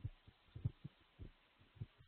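Faint computer keyboard keystrokes: a handful of soft, irregular, dull taps.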